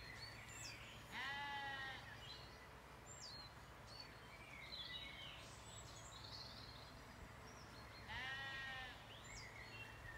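A Zwartbles sheep bleating twice: two bleats of just under a second each, about seven seconds apart. Faint bird calls come between them.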